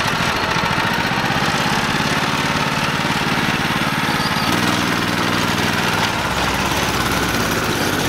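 Go-kart's small single-cylinder engine running just after a pull start, a steady mower-like note. About halfway through the note changes, and again a little later, as the kart is driven off.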